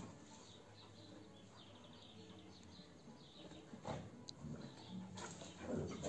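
Faint outdoor sounds: birds chirping lightly in the background, with a few soft scuffling noises from two dogs playing in loose dirt, around four seconds in and again near the end.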